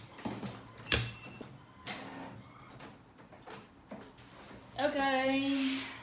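A few scattered light knocks and rustles of someone moving about and sitting down in a leather office chair with sheets of paper, then near the end a woman's drawn-out vocal sound lasting about a second.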